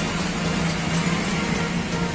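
Steady street traffic noise with a constant low engine hum, no single event standing out.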